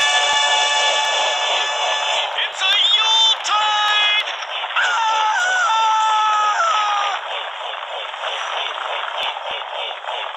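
A crowd of cartoon Santa Clauses yelling as they charge. A long held cry comes first, then separate shouts, then from about seven seconds a rougher clamour of many voices.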